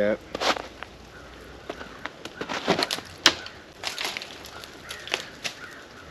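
Footsteps crunching in snow and brush with twigs snapping, as a disc golfer shifts and throws. Scattered short crackles, with the sharpest click about three seconds in.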